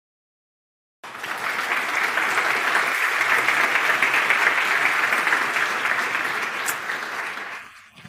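Large audience applauding, cutting in abruptly about a second in after dead silence and dying away near the end.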